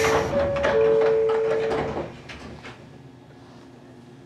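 Pneumatic sliding doors of a 115 series electric train closing. A burst of air hiss ends just after the start, a two-note chime sounds twice, and the doors shut with several clunks, the last about two and a half seconds in.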